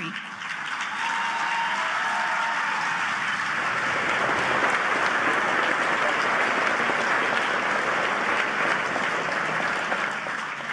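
A large audience applauding steadily, swelling a little after the first few seconds.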